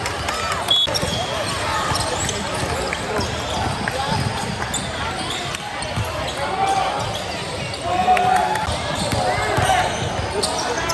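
Basketball game sound in a gym: a basketball bouncing on the hardwood court as players dribble, with spectators' and players' voices and shouts throughout, louder near the end.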